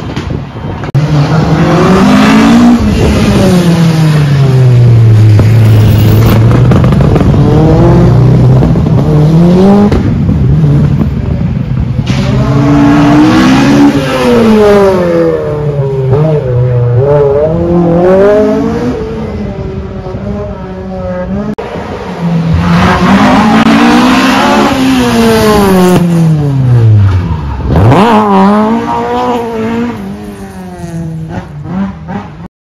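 Rally cars passing at speed on a tarmac stage, their engines revving hard and dropping back through gear changes several times over. Near the end the pitch falls steeply as one goes by.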